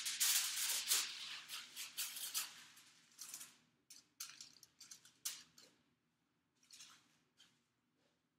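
Aluminium hair foil crinkling as it is folded over a painted section of hair, densest in the first three seconds, then a few short crackles and ticks.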